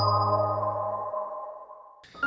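The last held chord of an electronic intro sting fading out: several sustained tones die away together, and a low note stops about halfway through.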